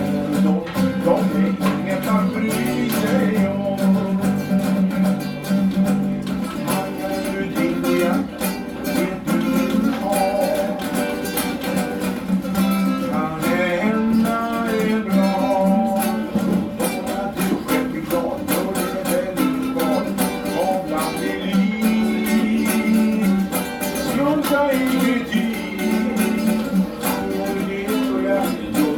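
A man singing a song to his own classical guitar accompaniment.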